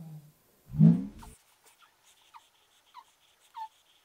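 A dog whimpering: three or four short, high whines, each falling in pitch, after a brief low voiced sound about a second in.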